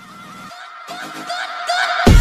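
An electronic intro riser: a warbling, wavering synth tone with a pulsing rhythm that builds steadily louder, leading into the intro music.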